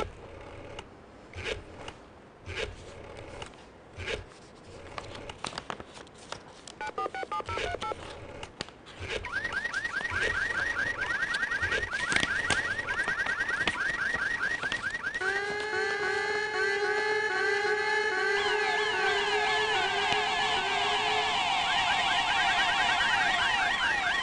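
Faint clicks and rustles, then a brief burst of telephone keypad tones about seven seconds in. From about nine seconds a rapid, warbling, alarm-like electronic sound effect begins and grows into several layered warbling tones about fifteen seconds in, part of a call-in quiz show's studio sound.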